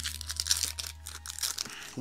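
A foil trading-card booster pack being torn open by hand: a run of crinkling and crackling of the foil wrapper, busiest in the first second.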